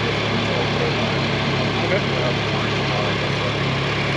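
An engine idling steadily, with an even low hum and no change in speed.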